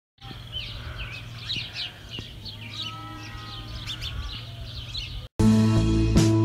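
Several small birds chirping and singing over a steady low hum. A little over five seconds in this cuts off and louder music begins.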